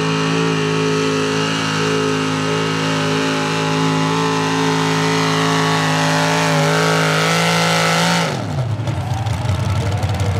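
Small-block V8 of a 4x4 pulling truck, with open vertical exhaust stacks, running at full throttle under load with a steady high pitch as it drags the sled. About eight seconds in the revs fall sharply as the throttle is lifted at the end of the pull, dropping to a lower, rough-running idle.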